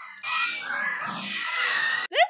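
Cartoon soundtrack with shrill, animal-like screeching and noisy commotion, cut off at the end.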